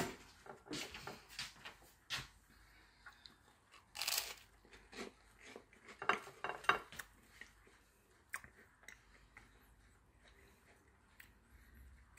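Biting into and chewing a slice of toast topped with mashed avocado, with short crunches now and then between quieter stretches of chewing.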